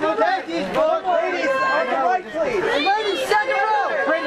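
Several voices talking and calling out over one another without a break: the chatter of photographers on a press line.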